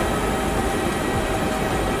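Steady rumbling mechanical noise with a few faint steady hums in it and no separate events: the background din of a busy airport forecourt.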